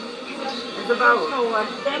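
Speech only: a person talking in conversation, with no other sound standing out.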